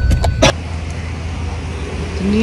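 Car cabin rumble with a few sharp clicks, cutting off abruptly about half a second in to steady street noise of road traffic.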